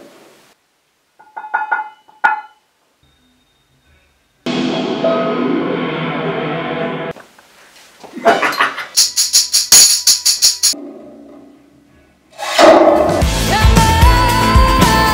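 Hand percussion recorded in a studio: a few short clicks, a stretch of music, then a quick run of sharp strokes with a bright shaking jingle, about five a second. Full band music comes in near the end.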